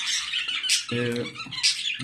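Budgerigars chattering, a steady run of short, high calls.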